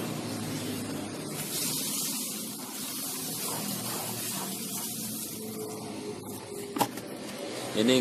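Rabbit-manure compost poured from a bucket and scattered around the base of a tree: a steady rustling patter of pellets on soil and gravel, with a single sharp knock near the end.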